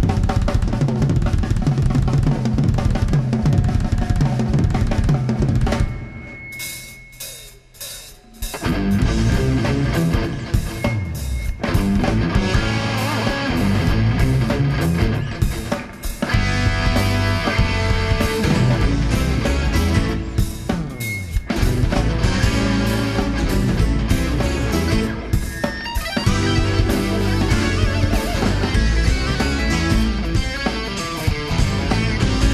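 Live rock band playing: a Carvin electric guitar leads over a Tama drum kit and bass, starting abruptly at full volume. About six seconds in the band drops out for a brief break with a held high note, then comes back in full.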